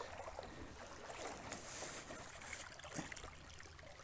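Faint sloshing and trickling of shallow creek water over a gravel bed as someone wades through it, a little louder for a moment about halfway through.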